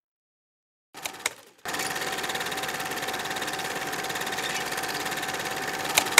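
A click about a second in, then a small machine running steadily with a fast, even rattle and a faint steady hum.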